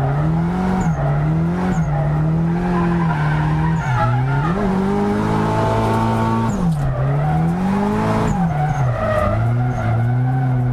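Drift car's engine heard from inside the cabin, its revs climbing and dropping repeatedly as the throttle is worked through a slide, over the squeal of the rear tyres.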